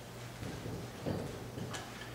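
Marker writing on a whiteboard: a few faint taps and strokes of the pen tip, over a low steady hum.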